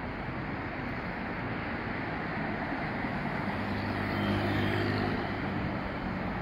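Street traffic on a busy city road, a steady wash of tyre and engine noise. A vehicle passes closer about halfway through, its engine hum swelling and then fading.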